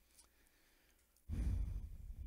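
A man's long sigh, a breath out close to a handheld microphone, starting about a second and a quarter in after a near-silent pause and carrying a low rumble of breath on the microphone.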